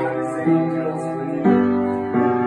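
Upright piano playing sustained chords, with a new chord struck about half a second in and another near a second and a half.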